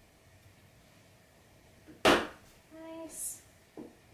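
A single sharp knock about halfway through, a plastic highlighter marker struck by the swinging apple and hitting the tabletop. It is followed by a short hummed vocal sound and a faint click near the end.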